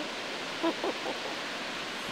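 Steady hiss of ocean surf washing on a beach.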